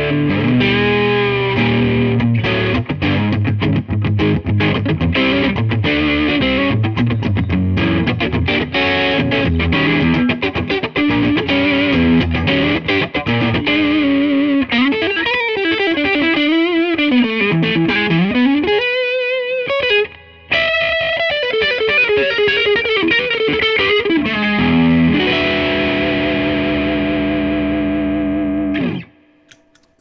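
Koll Troubadour II electric guitar with TV Jones Classic pickups, played on the neck pickup with some overdrive. It starts with strummed chords, moves to single-note lead lines with bends from about halfway, and ends on a held chord that stops a second before the end.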